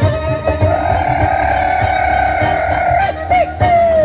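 Live Sardinian folk dance music on accordion and acoustic guitar over a steady low beat. A long held note runs through the middle, then short bending notes near the end.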